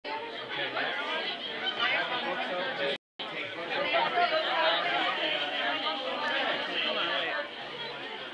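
Crowd chatter: several people talking at once, no single voice clear. The sound cuts out completely for a moment about three seconds in.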